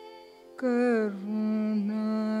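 Carnatic classical music: over a soft drone, a melodic line comes in loudly about half a second in, bends down in pitch, then settles on a long held note.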